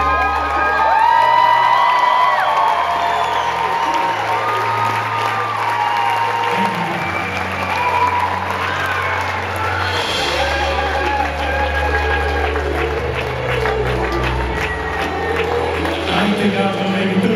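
Live orchestra and band playing an instrumental passage of held notes over a slow, stepping bass line, while the audience applauds and cheers; the clapping grows thicker in the second half.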